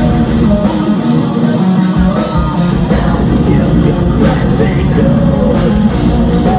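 Metalcore band playing live, loud and dense: distorted electric guitars over a full drum kit, with no singing.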